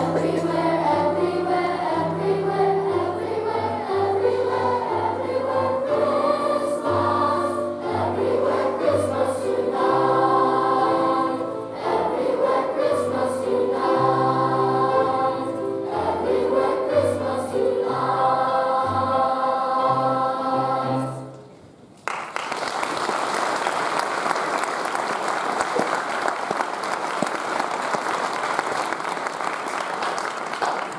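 Children's choir singing with piano accompaniment. The song ends about three quarters of the way through, and the audience applauds for the rest.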